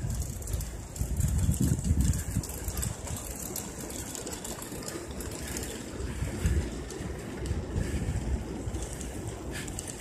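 Wind buffeting the microphone of a camera riding along on a bicycle: an uneven low rumble that swells in gusts in the first couple of seconds and again about six and a half seconds in.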